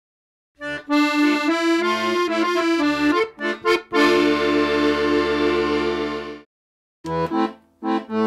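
Accordion music: a quick run of notes, then a long held chord that stops about six and a half seconds in; after a short gap, short chopped chords begin.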